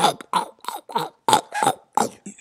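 A woman making a quick run of short, wordless mouth noises close to a headset microphone, about eight in two seconds.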